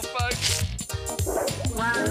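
Cartoon theme music with a steady beat, with dog barks and yips over it.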